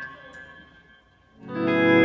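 Electric guitar played live. A held chord dies away to near silence, then a new sustained chord swells in loudly about one and a half seconds in.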